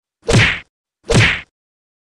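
Two loud punch sound effects, about a second apart, with identical shapes and dead silence around them. They are dubbed in for staged blows to a man on the ground.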